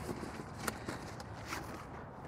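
Faint rustling and a few light clicks as items are handled inside a fabric duffel bag.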